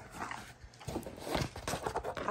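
Handling noise as a folded painting on canvas is opened out: a few soft knocks and rustles spread over the two seconds.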